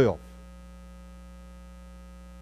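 Steady electrical mains hum with a buzzy row of overtones, unchanging throughout. A man's spoken word trails off at the very start.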